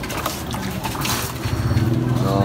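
Water sloshing and splashing as a plastic dipper is scooped through a basin of water and filled.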